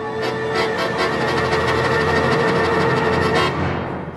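Scandalli accordion and symphony orchestra playing together in a loud, full passage, a long held note sounding over the dense orchestral texture, which thins briefly near the end.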